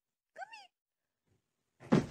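A cat gives one short meow that rises and falls in pitch, about a third of a second in. Near the end comes a sudden loud thump.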